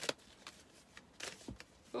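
Oracle cards being shuffled and handled: a few brief, soft rustles, with a low knock about one and a half seconds in.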